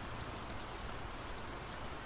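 Steady rain falling, an even hiss with no breaks.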